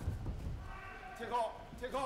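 Low background hum of a large sports hall, with a man's voice speaking briefly and faintly in the second half.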